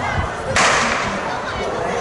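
Race start signal: a single sharp crack about half a second in, ringing off briefly, over crowd chatter.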